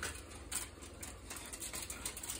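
Faint, irregular crinkling and rustling of plastic wrap and aluminium foil as hands work a raw ground-beef patty, with a few soft clicks.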